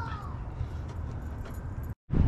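Faint small metallic clicks of hood-pin bolts and an Allen key being handled and turned under a car hood, over a steady low rumble on the microphone. The sound cuts off abruptly near the end.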